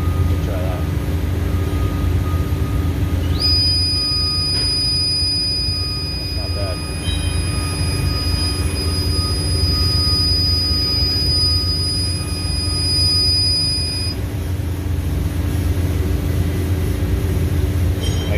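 Steady low electrical hum from the induction furnace setup. About three seconds in, a high-pitched whine slides up and then holds steady, cutting off abruptly about eleven seconds later.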